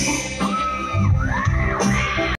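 Live band music played loud on a concert PA, heard from within the audience, with bass guitar and electric guitar. In the second half a held high note bends down and back up twice.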